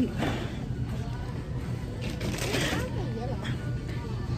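Store background: faint music and distant voices over a steady low hum, with brief rustles as plastic soda bottles are handled.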